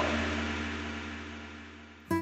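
A steady hiss that fades away smoothly over about two seconds, over a low steady hum.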